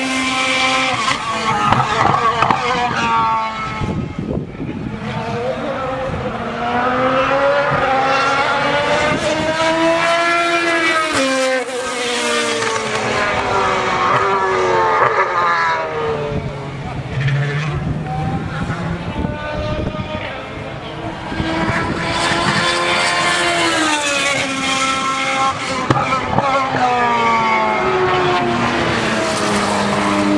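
Sports-prototype race cars running past one after another, their engines climbing in pitch and then dropping in steps as gears change, over a continuous loud noise of the field at speed.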